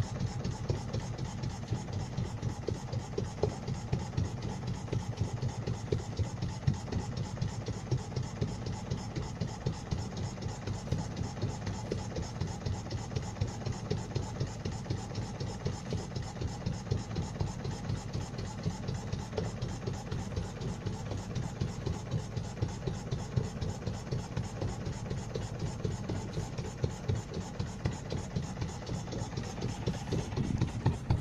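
Small wooden motorboat's engine running steadily under way, a constant low, evenly pulsing chug.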